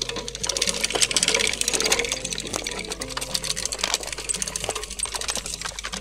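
Jang push seeder rolling along a bed, its drive chain and seed roller making a rapid, dense clicking rattle that is loudest about a second in.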